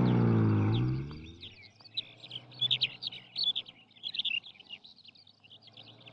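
A car engine's low hum fades out over the first second and a half as it drives away, then birds chirp and tweet in a steady stream of short high calls.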